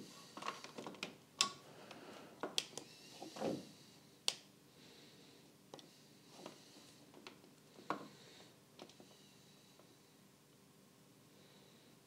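Faint scattered clicks and light taps, about ten of them, from a borescope's probe cable and handheld screen unit being handled while the probe is fed into a spark plug hole.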